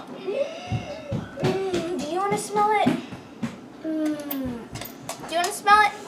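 Children's voices in short bits of talk and drawn-out exclamations.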